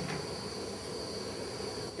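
Steady low hiss of room and recording noise with a faint high-pitched whine.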